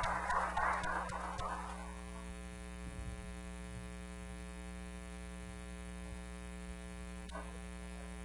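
Brief clapping dies away over the first two seconds, leaving a steady electrical hum and buzz from the sound system.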